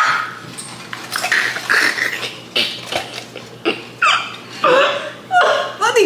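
A man and a woman laughing hard, in a string of short vocal bursts roughly every half second to a second.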